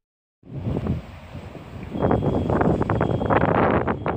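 Wind buffeting the microphone in uneven gusts over outdoor street noise. It starts about half a second in and grows louder about two seconds in.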